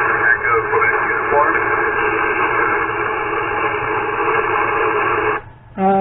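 Audio from a Yaesu FT-710 HF transceiver receiving 40-metre single-sideband: steady band static, with a weak station's voice faintly audible through it in the first second or so. The static cuts off abruptly about five and a half seconds in, as the receive audio goes quiet.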